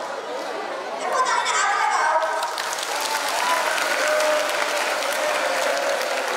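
An audience of children clapping. The applause starts about two seconds in and continues under voices.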